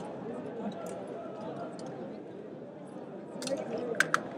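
Background murmur of many distant voices in a large sports hall, with a couple of faint sharp clicks near the end.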